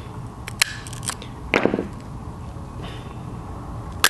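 Small parts being handled: a few light clicks and a short, louder rub about one and a half seconds in, as the black plastic inner ring is worked out of a VW speedometer's chrome bezel by hand, with a sharp click at the end.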